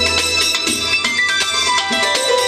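Live band music played through PA speakers: a synthesizer keyboard lead of quick notes over bass guitar, its melody stepping down in pitch in the second half.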